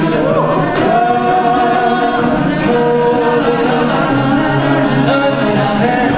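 A cappella group singing into microphones, several voices in sustained harmony under a male lead singer.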